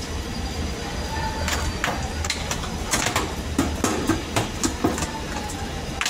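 Irregular metallic clanks and knocks as a metal rod and sheet-metal panels of an ice machine are handled and struck against each other, bunched in the middle of the stretch, over a steady low hum.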